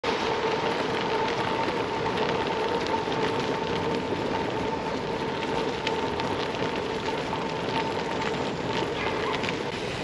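Gravel bike tyres rolling over a trail covered in dry fallen leaves: a steady crackling rustle full of small clicks, with a faint steady hum underneath.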